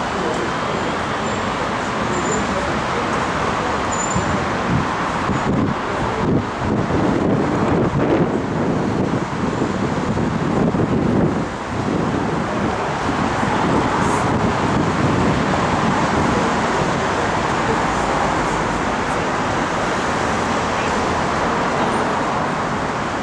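Steady road traffic noise on a busy city street, with some wind on the microphone.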